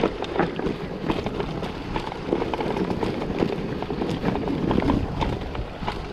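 Mountain bike riding over a bumpy dirt trail: tyre noise on the ground with frequent irregular rattles and clicks from the bike over bumps, and wind on the microphone.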